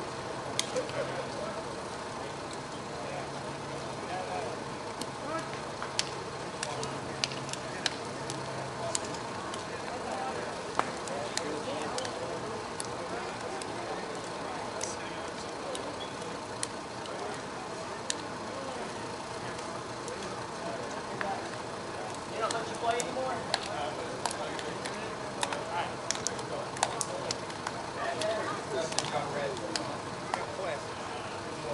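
Distant chatter of a group of softball players, with scattered sharp slaps, many of them near the end: hand slaps as the two teams file past each other in a postgame handshake line.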